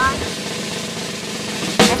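Snare drum roll sound effect, a steady rattle that ends in one loud hit just before the end, played as suspense while the food is tasted.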